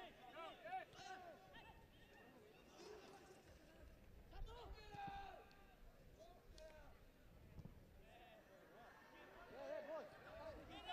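Faint men's voices calling out on a football pitch, over quiet stadium background.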